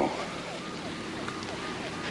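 Steady rushing wind noise with no distinct events.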